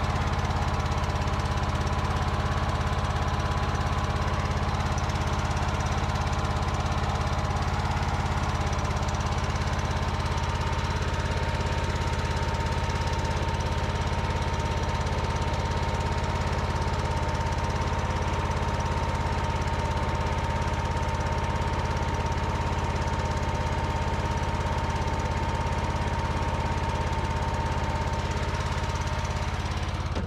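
Kohler Courage 26 engine of a Craftsman garden tractor running steadily, with a constant high whine over the engine note.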